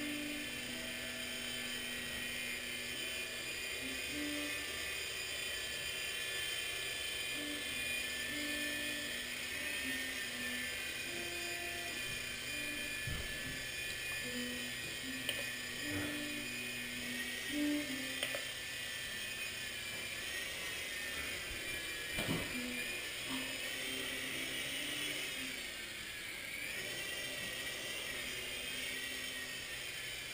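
Blade mCX coaxial micro RC helicopter's electric motors and rotors whining steadily in hover, the pitch wavering up and down for a few seconds past the middle as the throttle changes. It is flying on flybar ball joints freed from binding to cure its toilet-bowl wobble. A few faint knocks fall in the middle.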